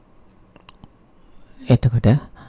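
Quiet room tone with three faint, short clicks between about half a second and one second in, then a man's voice starts speaking near the end.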